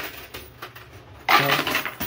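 Quarters clinking and rattling at a coin pusher machine: a run of light coin clicks, then a louder jingle of coins a little past halfway.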